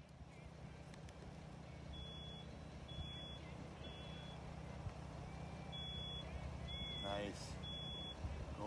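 Short, high electronic beeps repeating roughly once a second, with a gap in the middle, over a steady low rumble; a brief voice sound near the end.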